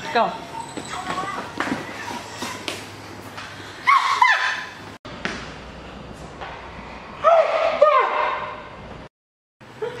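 Two bursts of a person's voice without words, one about four seconds in and a longer one around eight seconds, over steady room noise.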